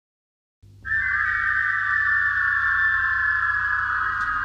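Electric guitar sounding one sustained high note that slowly falls in pitch, over a low steady amplifier hum, as a rock recording begins. The hum comes in about half a second in and the guitar note just before a second in.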